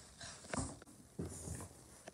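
A boy's faint breathy huffs, two short ones about half a second and a second and a quarter in.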